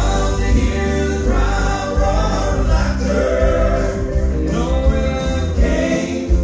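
Male southern gospel trio singing together in harmony through microphones and a sound system, over an accompaniment with a steady low bass.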